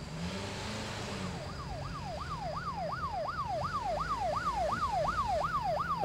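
Police siren in a fast yelp, its pitch sweeping up and down about three times a second. It comes in about a second and a half in and grows louder.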